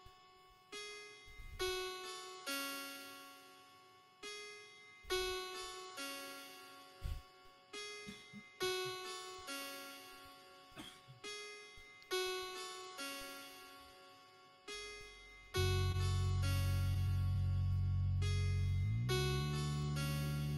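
Looped beatbox music from a loop station: a repeating line of short notes, each starting sharply and dying away, about one a second. About fifteen seconds in, a loud held sub-bass layer comes in and steps up in pitch near the end.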